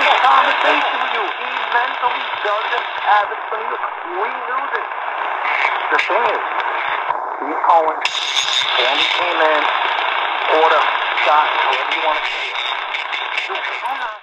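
Talk from AM station WFAN 660 New York, received from 750 miles away and playing through the C.Crane CC Skywave portable radio's speaker: a narrow, hissy voice with a station on 670 kHz bumping into 660. The reception shifts briefly about seven seconds in as the tuning is stepped.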